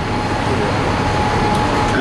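Heavy vehicle noise from street traffic, a steady rumbling wash with a thin high whine running through it.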